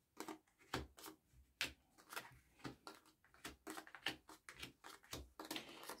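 Oracle cards being dealt one at a time from the deck onto a cloth-covered table: a string of faint, quick card slaps and flicks, several a second.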